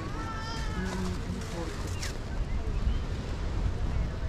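Outdoor walking ambience: passers-by talking, with a short high-pitched call in the first second and a brief falling squeak near the middle, over low wind rumble on the microphone.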